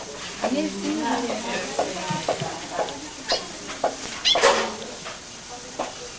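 Indistinct voices in the background with scattered clicks and knocks of a clattering kind, the loudest about four and a half seconds in.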